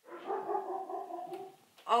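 A woman's drawn-out 'mmm' of delight, one held note about a second and a half long, ending just before a short 'oh'.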